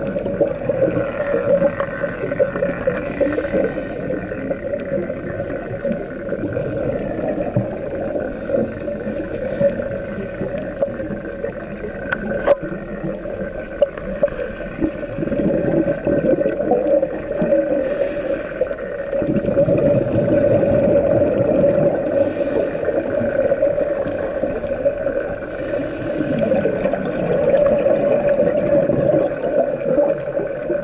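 Muffled underwater sound through an action-camera housing: a scuba diver's regulator breathing, with short hissing inhalations and longer bubbling, gurgling exhalations every few seconds over a steady low hum.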